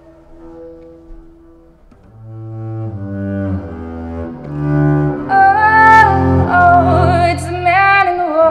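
Live acoustic music: a double bass plays long sustained low notes that swell in from about two seconds in, over a soft ukulele. About five seconds in, a woman's voice comes in with a wordless, wavering vocal line.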